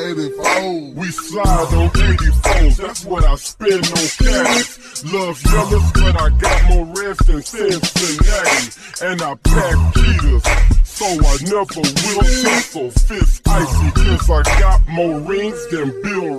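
Slowed-and-chopped hip-hop: a pitched-down rapped vocal over deep, repeated bass hits.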